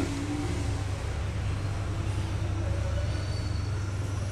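A steady low mechanical hum with no distinct events.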